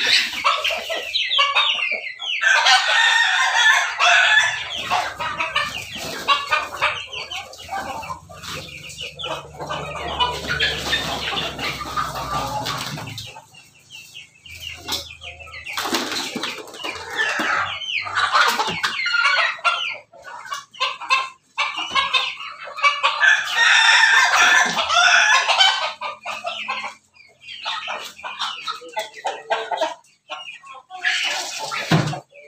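A flock of chickens clucking, with roosters crowing several times in long loud calls.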